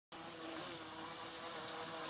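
Super Hawaii RC boat's direct-drive brushless electric motor whining faintly in the distance, a steady two-note tone. The owner judged its propeller too big for the motor to swing.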